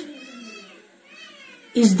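Two faint, drawn-out animal calls in the background, a longer one at the start and a shorter one about a second in, between a man's spoken words.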